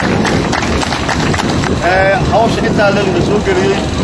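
A man's voice speaking into a handheld microphone, over a continuous rough background noise.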